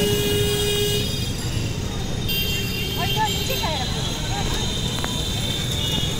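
Busy town street traffic heard from a moving vehicle: a steady rumble of engines and road noise, with a vehicle horn held for about a second at the start.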